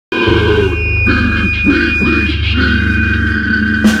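Heavily distorted, low-tuned electric guitars and bass playing a live death metal riff. The drum kit comes in with sharp hits just before the end.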